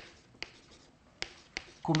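Chalk tapping and scratching on a blackboard as words are written, with four sharp taps.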